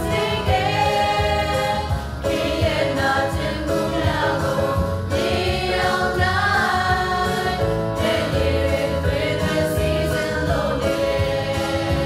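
A Christian worship song: a group of voices singing together with instrumental accompaniment and a steady low bass pulse.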